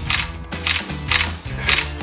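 Smartphone camera shutter clicks, four in quick succession about half a second apart, over background music.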